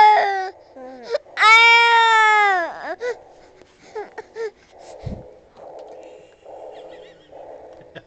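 Baby with a pacifier in its mouth crying out in two loud, high wails, a short one at the start and a longer one about a second and a half in that falls away at its end. Shorter, fainter cries follow, then softer breathy sounds about once a second.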